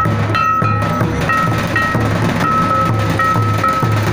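Festival drumming on barrel-shaped hand drums and a large bass drum, beating a steady low rhythm about two to three strokes a second. Over it a high melody holds notes and steps between a few pitches.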